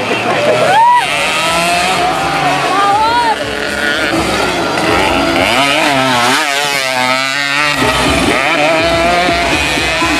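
Race motorcycle engines revving up and down repeatedly as the bikes work through the dirt track's corners, with a stretch of rapid rising and falling revs in the middle.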